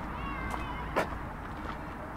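A short, high, wavering animal call, then a single sharp click about a second in, over a steady outdoor background hum.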